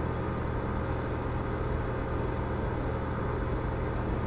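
Steady low hum with a faint hiss, unchanging throughout: the constant background noise that runs under the whole lecture recording.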